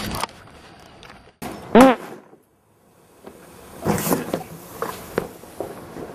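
A short, loud fart pushed right against the camera microphone about two seconds in, with a pitch that rises and falls. It cuts to a moment of dead silence, followed by a few scattered knocks and thuds.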